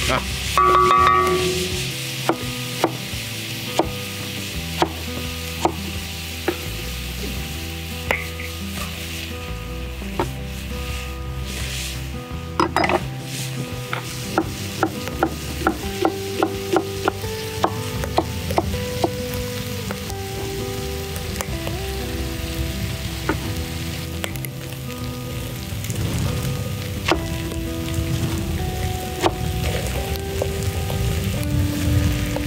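Onions and vegetables sizzling in a black wok over an open wood fire, with runs of sharp knife strokes chopping green onion on a wooden cutting board, heaviest in the middle and near the end. Soft background music plays underneath.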